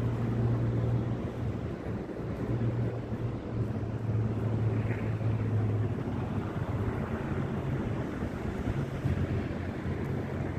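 Steady outdoor city noise: a low rumble, with wind on the microphone.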